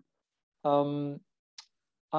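A man's voice saying a drawn-out 'um', followed a moment later by one short faint click, with dead silence on either side.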